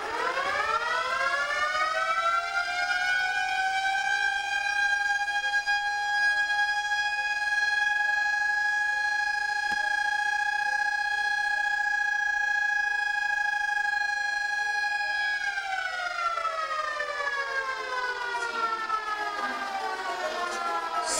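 Siren-like stage sound effect: a wail that climbs over the first few seconds, holds one steady pitch for about twelve seconds, then slides back down near the end.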